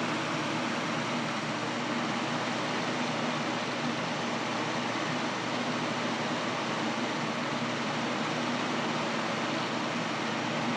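Steady machine hum with an even hiss, unchanging throughout, as from a running motor or fan.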